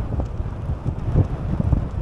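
Wind buffeting the microphone of a camera riding on a moving bicycle: a gusty, uneven low rumble.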